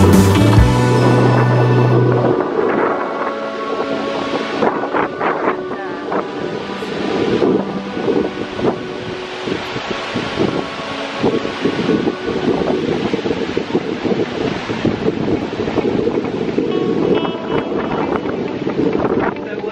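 Background music that ends within the first two seconds, giving way to the steady rush of a large waterfall, with wind gusting across the microphone.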